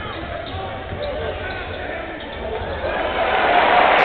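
Basketball game sound in an arena: a ball dribbling on the hardwood under continuous crowd noise and faint voices, the crowd swelling louder near the end.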